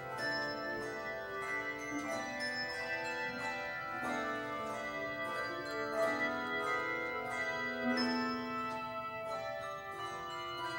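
Handbell choir ringing a piece: many handbell notes struck and left to ring, overlapping into sustained chords.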